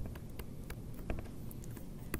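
Stylus tapping on a tablet screen while writing by hand: a run of light, irregular ticks.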